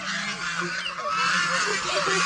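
A flock of white domestic geese honking, many short calls overlapping one another.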